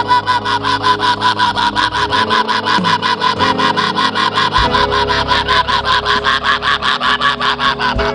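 A man's voice through the PA rapidly repeating one syllable at a steady high pitch, about six or seven times a second, praying in tongues. Soft sustained keyboard chords play underneath.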